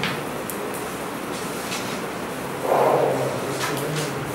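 Classroom room tone: a steady hum with a few faint ticks and rustles, and a short muffled sound about three seconds in.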